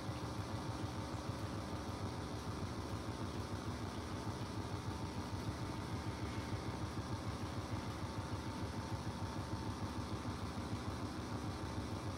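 Steady low mechanical rumble with a faint steady hum.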